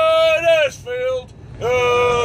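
A man's voice chanting a football chant in long, drawn-out shouted notes: a held high note, a short lower note about halfway through, then another held note starting near the end.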